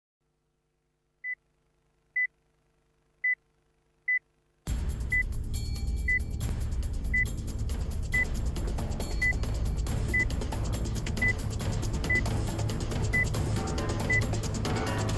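Countdown-clock beeps: a short, high-pitched beep about once a second. About a third of the way in, music with a heavy low end starts, and the beeps carry on over it.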